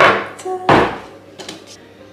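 Kitchen handling noise: a sharp clatter at the start and a dull thump just under a second in, as utensils and objects are handled on the counter.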